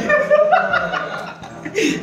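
A woman laughing, with a few words of talk mixed in.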